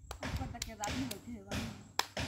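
Soft, low background talk from people nearby, with a few light taps and one sharp tap at the very end.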